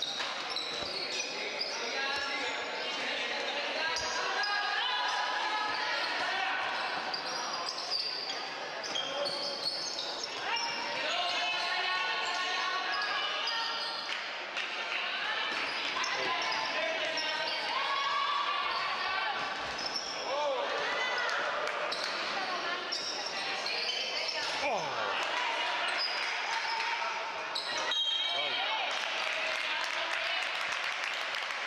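Indoor basketball game: the ball bouncing on the court amid players' and spectators' voices, with short high squeaks or calls throughout.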